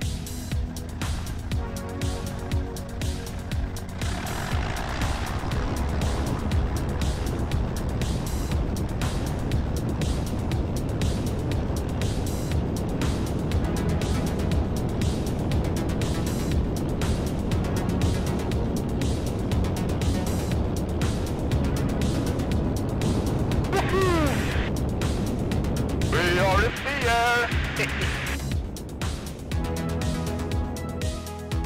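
Music playing over the steady sound of a Piper PA-28's engine and propeller at takeoff power during the takeoff roll.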